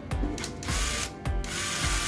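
Small DC motor whirring in short runs as a micro switch is pressed and released, with sharp clicks from the switch. The motor starts about two-thirds of a second in, stops briefly and runs again.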